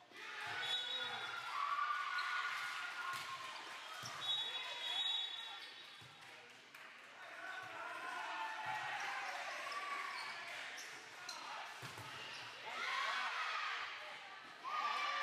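Indoor volleyball rally: a volleyball is struck and bounces several times, sharp slaps and thuds amid players' voices calling out across the gym.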